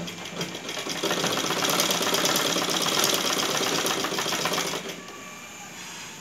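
Sewing machine stitching through fabric: it picks up speed over the first second, runs steadily for about four seconds, then stops a little before five seconds in.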